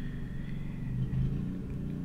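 Steady low rumble of background noise with a faint thin whine over it.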